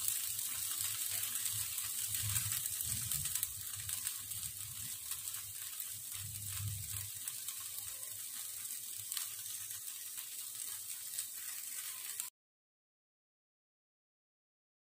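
Marinated meat chops and corn sizzling on an electric tabletop grill: a steady, fine hiss that cuts off suddenly near the end.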